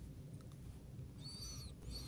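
Two faint high-pitched calls in quick succession, each rising and then falling in pitch, from a bird, over a low room hum.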